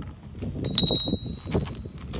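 A single bright metallic clink that rings out and fades over about a second: a steel tool striking something hard. Under it, footsteps scuff across gravelly dirt.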